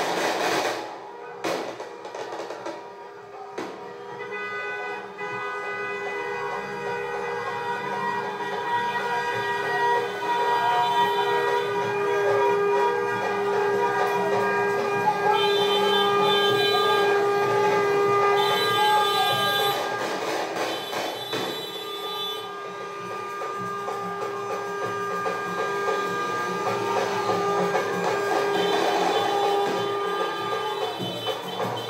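Many car horns sounding at once in long, overlapping blasts of different pitches, held for many seconds.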